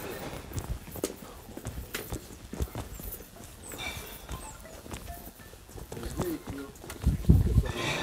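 Footsteps of several walkers and the tips of trekking poles tapping irregularly on stone paving. A brief loud low rumble comes about seven seconds in.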